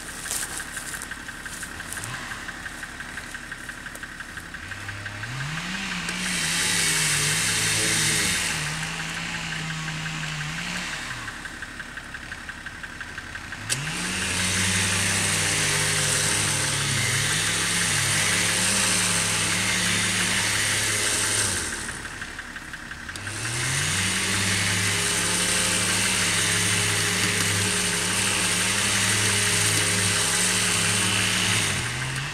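Badland 12,000 lb electric winch on a pickup's front mount, run in three pulls under load: each time the motor's pitch rises as it starts, holds steady with a gear whine over it, then drops as it stops.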